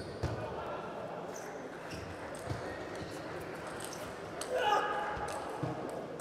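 Table tennis ball clicking off bats and table during a doubles rally, sharp short strikes spread through the hall's ambience. A brief voice is heard near the end.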